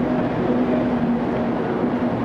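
Shinkansen bullet train pulling slowly into the station platform: a steady rumble of the cars running past with a low hum.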